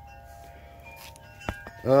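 Faint, steady chime-like ringing tones that fade out, then two sharp clicks about one and a half seconds in.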